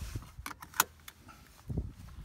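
Small metal hardware being handled: a few sharp metallic clicks and clinks, the loudest just under a second in, followed by a soft low thump near the end.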